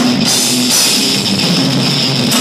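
Heavy metal band playing live: distorted electric guitar over a drum kit, loud and dense with no break.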